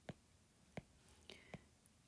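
Faint taps and clicks of a stylus tip on a tablet's glass screen while handwriting, two sharper ones under a second apart, against near silence.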